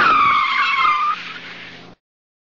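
Car tyres squealing in a skid, a loud gliding screech over a low steady hum. It fades somewhat after about a second and then cuts off suddenly.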